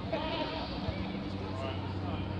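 A man's voice calling out, wavering in pitch, for under a second near the start, over a steady low hum.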